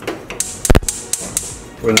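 Gas cooktop burner's spark igniter clicking several times in quick succession as the knob is turned, until the burner lights under the frying pan; one click near the middle is louder than the rest.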